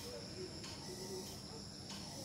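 Insects chirring steadily on one even high pitch, with a faint low hum beneath.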